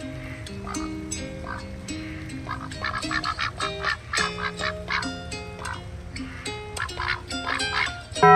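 Cayuga drakes giving short, repeated quacks over background music of long held notes.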